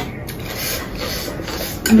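Eating sounds: a rough rubbing and scraping as chopsticks and a fork work fried noodles on leaf-lined plates.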